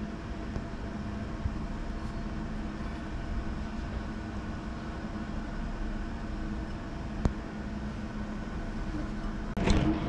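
A steady low mechanical hum with a few held tones running under it, and a single sharp click about seven seconds in.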